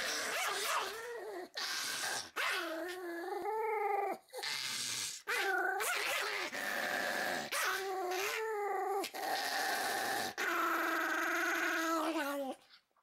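Pomeranian growling and snarling in a long run of pitched vocalizations, each about a second long with short breaks between them, the last held for about two seconds near the end.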